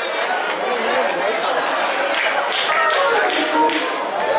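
Overlapping voices echoing in a large church sanctuary, with scattered sharp taps, several of them in the second half.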